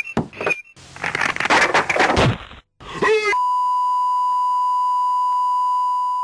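A dense rush of noise for about two seconds, then a short sliding pitched sound, then a steady single-pitched electronic beep that starts about halfway through and holds unbroken for the last three seconds.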